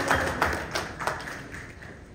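Audience applause dying away: dense clapping thins to a few scattered claps and fades out by about a second and a half in.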